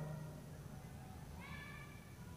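Faint squeak of a marker pen drawn across a whiteboard, about one and a half seconds in, over quiet room tone.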